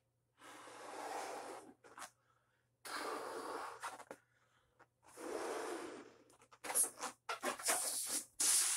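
Latex balloon being blown up by mouth: three long, forceful breaths into it, each about a second, with quick inhales between. Near the end comes a run of short sharp sounds.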